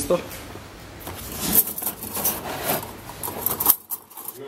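Rustling and light clinking as a hand and a plastic bag handle a box of thin cut metal parts, with several sharp rattles.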